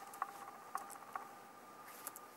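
A few soft, isolated computer keyboard clicks, about three in the first second or so, during a pause in typing. A faint steady high hum runs underneath.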